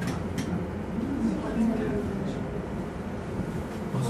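Glass gondola car riding down its rail track over the Globe arena's dome: a steady low rumble with a few sharp clicks.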